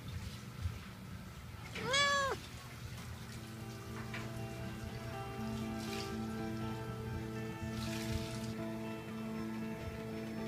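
A domestic cat meows once, about two seconds in: a single short call that rises and falls in pitch. Soft background music plays under it.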